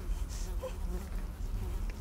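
A steady low buzzing hum.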